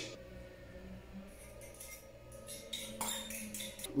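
Pancake batter hitting a hot frying pan with no oil: a faint sizzling crackle that starts about a second and a half in and grows stronger near the end.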